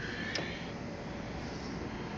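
Steady, even hum of a room air conditioner running.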